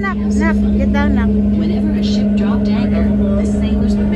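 Tour boat's engine running with a steady low drone, children's voices calling over it in the first second or so.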